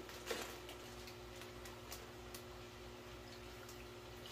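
Faint, scattered light ticks and crinkles of a plastic fish bag being handled over a bucket, dying away after the first couple of seconds, over a steady low hum.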